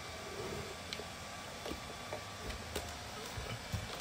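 Quiet steady room tone with a few faint scattered clicks and taps from handling a portable power station, its cables and a Bluetooth speaker.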